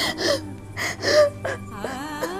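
A woman sobbing in several short, gasping breaths over soft background music with long held notes.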